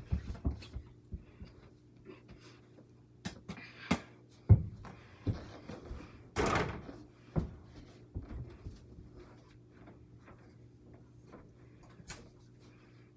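A small ball bouncing on carpet and striking a mini over-the-door basketball hoop: a string of separate thumps and knocks, with a longer rattle about six and a half seconds in as a shot hits the backboard and rim.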